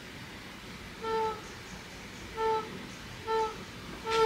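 Upholstered swivel accent chair squeaking three times as it is rocked with someone seated in it, each squeak a short, steady, pitched tone about a second apart. It squeaks only under a sitter's weight, while its matching chair does not, and the cause is unknown to the owner.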